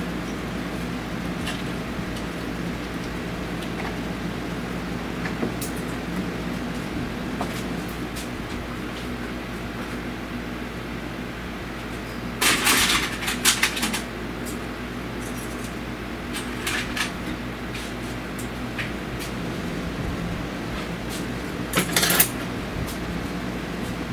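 Short clatters of metal tools and parts being handled, once about halfway through and again near the end, over a steady hum of shop fans or ventilation.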